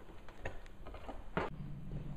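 Two light knocks about a second apart as the riser kit's aluminium subframe leg is handled and brought down into place on a motocross bike's frame, over a faint low hum.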